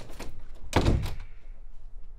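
Interior panel door closing with a single heavy thunk a little under a second in, after a few light clicks.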